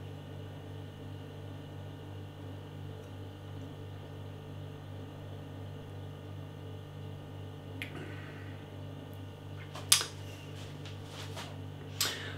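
Steady low hum of a quiet room, with a faint click about eight seconds in and a short, sharper click about ten seconds in.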